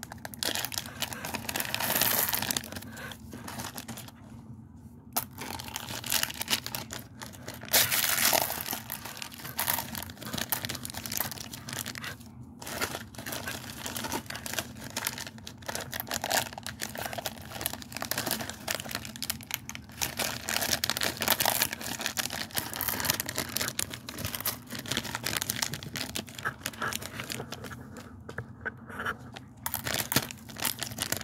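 Small plastic Reese's Pieces wrappers being crinkled and torn open by hand, in repeated bursts of rustling with a few short pauses.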